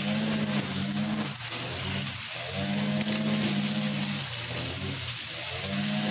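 A grass cutter's small engine drones steadily, its pitch swelling and sagging with the throttle and dipping briefly four times. Beneath it is the hiss of a stream of water washing soil off snake plant roots.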